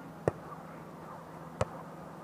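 A volleyball being struck by players' hands twice, about a second and a quarter apart: two sharp slaps of the ball being passed and set.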